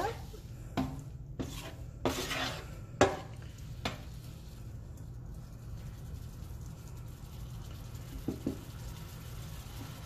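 A spatula stirring and scraping ground taco meat in liquid in a nonstick electric skillet. There are several knocks against the pan in the first four seconds, the loudest about three seconds in, then quieter stirring over a steady low hum.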